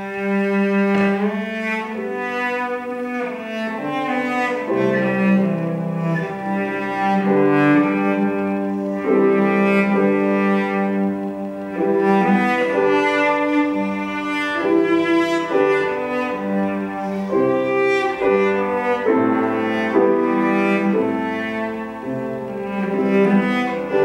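Cello playing a melody of long, bowed notes with piano accompaniment, the music beginning right at the start.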